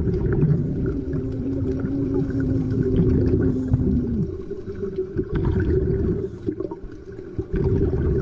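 Muffled underwater sound: a dense low water rumble, with a low drawn-out tone held for about three seconds that bends down and fades out near the middle.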